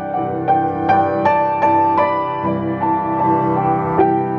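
Hamburg-built Steinway Model B grand piano (6 ft 10½ in) being played: a slow melody over sustained chords, about two or three new notes a second, each note ringing on under the next.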